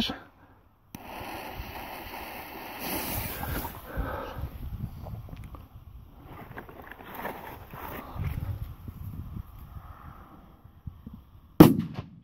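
One sharp firecracker bang from a P1-class Böller going off near the end, after several seconds of faint background noise.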